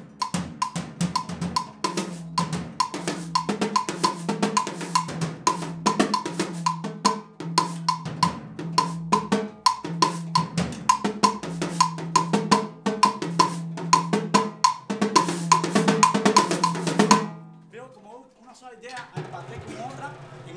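Drum kit with a mounted cowbell and a red plastic block played in a fast, steady pattern: a regularly repeating bell note runs over drums and cymbals. The playing stops suddenly about three seconds before the end.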